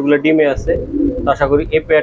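Pakistani high-flyer pigeon cooing: one low, throaty rumbling coo about half a second in, lasting under a second, from a male puffed up in a courtship display. Men's voices are heard before and after it.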